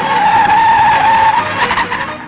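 A jeep's tyres screeching as it pulls away hard: one long squeal, a little over a second, that fades near the end.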